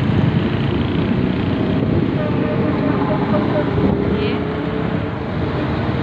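Steady rumbling engine and road noise of a vehicle driving along a street, heard from on board.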